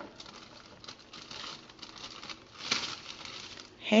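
Dry Pillsbury yellow cake mix pouring from its plastic inner bag into a large plastic mixing bowl: a soft, uneven hiss of falling powder with the bag crinkling. The bag gives one brief louder rustle about three-quarters of the way through.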